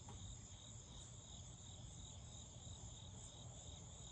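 Faint, steady chorus of insects: an unbroken high-pitched trill.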